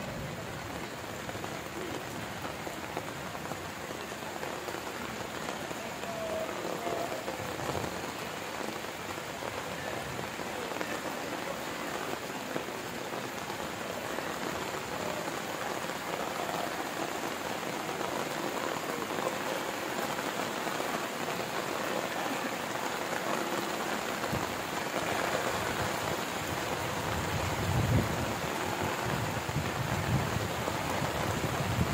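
Steady rain falling on a corrugated metal roof and the wet ground, growing slightly louder over the stretch.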